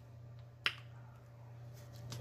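A single sharp click about two-thirds of a second in as a forkful of syrupy pancake goes into the mouth, over a low steady hum.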